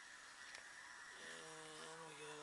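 Faint room hiss with a thin steady high whine. About a second in, a man's voice starts a long, flat, wordless hum or drawn-out "mmm" at the pitch of his speaking voice.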